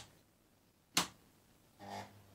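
Light switch clicked once, about a second in, switching cool fluorescent tube lights back on. Near the end the tubes strike with a short buzz and a low mains hum returns.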